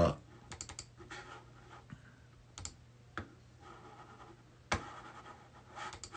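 Scattered key taps and clicks on a laptop, a few at a time with quiet gaps between, the sharpest single click about three-quarters of the way through, over a faint steady hum.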